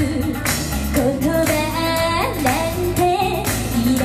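Woman singing a pop song live into a microphone over amplified pop backing music with a steady beat.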